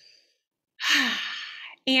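A woman's long audible sigh, a deep breath let out, loudest at its start and fading over about a second. It comes after a moment of quiet, and speech resumes right at the end.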